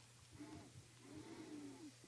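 Near silence: faint room tone with a steady low hum, and two faint arching pitched calls, a short one about half a second in and a longer one in the second half.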